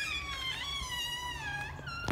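Front door hinges squeaking as the door swings open: one long squeal that falls slowly in pitch.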